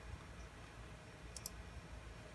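Two quick, faint clicks from a computer mouse about a second and a half in, over a low steady room hum.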